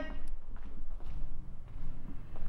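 Footsteps and handheld-camera handling noise as someone walks through a room, with a few soft taps over a faint steady low hum.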